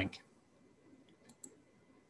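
A voice trails off at the start, then two faint clicks come close together about a second and a half in: a computer mouse being clicked.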